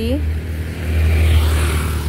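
A road vehicle passing by on the street: a rushing noise that swells about a second in and is loudest near the end, over a low rumble.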